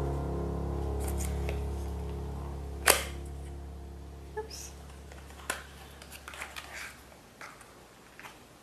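Small paperboard cosmetics box being handled and its tuck flap opened, giving a few sharp clicks and taps, the loudest about three seconds in. Piano background music fades out underneath.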